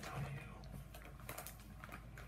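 Gift-wrapping paper crinkling and tearing as two dogs pull at a wrapped present, heard as a few scattered short crackles and clicks.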